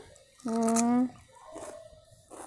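Crisp chewing on a mouthful of raw cucumber: soft crunching strokes in the second half. About half a second in, a short steady pitched call or hum sounds for about half a second.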